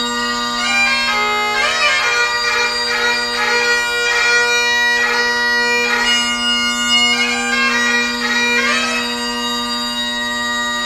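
Great Highland bagpipe playing: the drones sound one steady low note throughout while the chanter plays a slow melody above them, each note broken by quick grace-note cuts.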